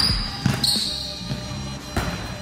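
A basketball dribbled on a hardwood gym court, with a hard bounce at the start and another about half a second in, then lighter ones, over background music.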